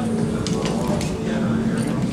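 Background talk of people in a busy retail store over a steady low hum.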